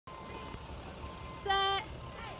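A girl's voice calling out one short word on a single held pitch, the cue that starts a cheerleading chant.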